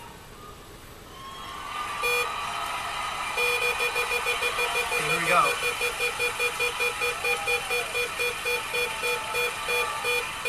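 The Big Wheel on The Price Is Right spinning, its pointer clicking against the pegs in a steady run of ticks that gradually slows, over crowd noise from the studio audience.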